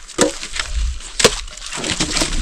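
Pieces of split firewood knocked together as they are stacked by hand: two sharp wooden knocks about a second apart, with lighter rustling and scraping of wood between them.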